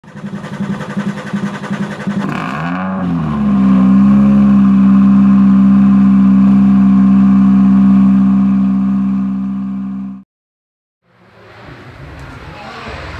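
Car engine running with a lumpy, pulsing beat, revved up between about two and three seconds in and then held at a steady high pitch for several seconds, cutting off abruptly about ten seconds in.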